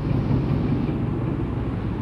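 A steady low rumble of background noise.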